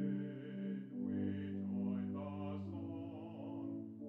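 Hymn music in slow, sustained chords, most likely played on an organ, with each chord held steady for about a second before moving on.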